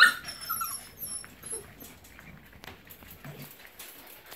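Puppies whimpering and squeaking in high thin cries, opening with a sudden sharp yelp. Then only scattered small scratches and rustles.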